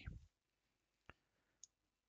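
Near silence with two faint, short clicks, one about a second in and another about half a second later.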